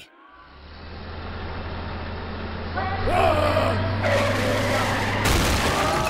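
A bus's engine drone drawing near and growing louder, then tyres squealing from about three seconds in as it brakes hard to a stop, with a burst of hiss about five seconds in.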